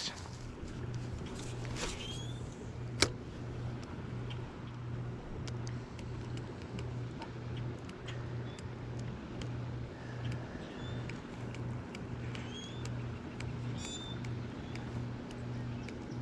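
A low hum that pulses evenly about three times every two seconds, with a few short bird chirps over it and one sharp click about three seconds in.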